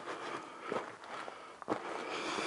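Footsteps on the loose rock and dirt of a cave floor, with two distinct steps, about a third of the way in and near the end, over a steady scuffing noise.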